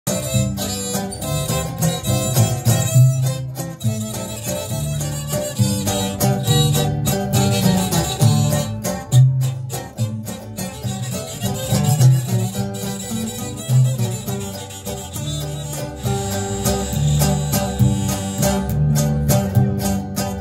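A live Mexican string ensemble playing an instrumental passage: violin lead over strummed acoustic guitars and a plucked upright double bass keeping a steady, bouncing bass line.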